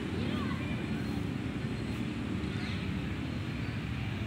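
Steady low outdoor rumble on a phone microphone, with faint distant voices and short high chirps.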